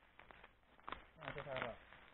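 Dry eucalyptus branches rustling and crackling as they are handled and dragged through grass, with a sharper snap about a second in. A brief voice sound follows just after.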